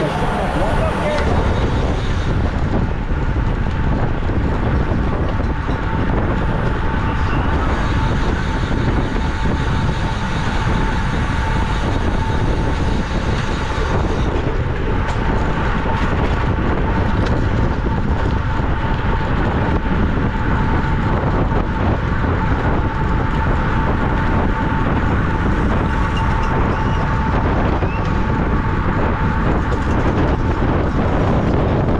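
Wind buffeting the microphone of a camera mounted on a road bike racing at 20–30 mph, with tyre and road noise, a steady loud rush. A thin steady high tone runs through it.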